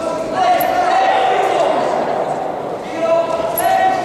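Loud, drawn-out shouting from people watching an amateur boxing bout: one long shout, then a shorter one near the end, over the thuds of the boxers' gloves and feet on the ring canvas.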